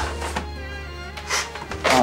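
Soft background score with a low, steadily held bass note, and a brief soft sound about one and a half seconds in.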